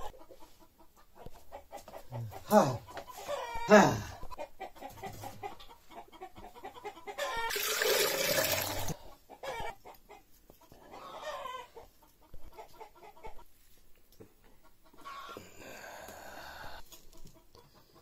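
Domestic chickens clucking and a rooster crowing, including two loud calls that fall in pitch a few seconds in and more calls later. About halfway through there is a brief rush of noise.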